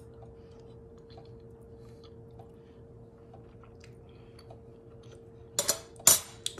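Faint chewing: soft, scattered mouth clicks from someone eating a hot piece of stewed meat, over a steady faint hum, with a brief louder sound near the end.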